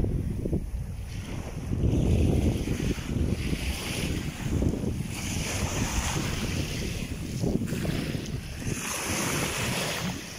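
Small waves washing up on a sandy beach, their hiss swelling and fading every couple of seconds, under a heavy rumble of wind buffeting the microphone.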